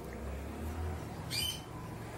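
A pause in talk with a faint low background hum, and one short, high bird chirp about one and a half seconds in.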